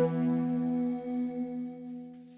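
Score playback of a held synthesizer chord, steady tones that thin out and fade over the second half.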